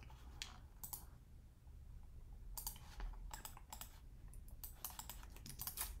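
Computer keyboard keys tapped in short irregular runs: a few keystrokes in the first second, then a quicker burst of typing from about two and a half seconds in.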